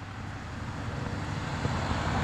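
Road traffic: cars driving past at close range, a steady engine and tyre rumble that grows gradually louder as a vehicle approaches.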